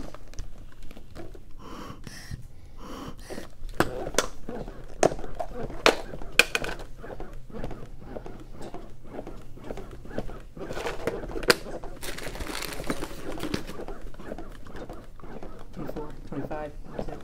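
Chest compressions on a CPR training manikin: repeated clicks and knocks from the manikin and the equipment being handled, with the rescuer breathing hard from the effort.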